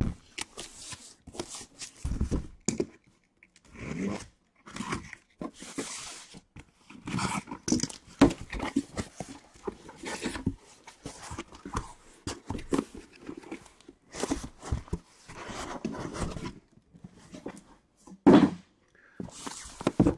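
A taped cardboard case being cut open and unpacked: packing tape slit and torn, then cardboard flaps and the inner boxes scraping and knocking in irregular bursts.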